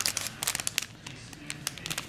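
Small clear plastic packets crinkling as they are handled, with a quick run of crackles in the first second that thins out to a few scattered ones.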